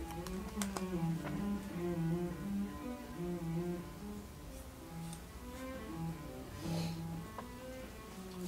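Music: a slow melody of held low notes, each lasting about half a second to a second and stepping from pitch to pitch.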